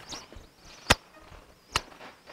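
A church congregation standing up from wooden pews: faint shuffling and rustling, with two sharp knocks less than a second apart, one near the middle and one near the end.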